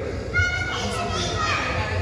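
Young children's voices, with a high-pitched child's voice calling out about half a second in, over a steady low hum.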